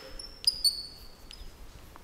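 Chalk writing on a blackboard: sharp taps of the chalk and high-pitched squeaks, starting about half a second in and lasting under a second.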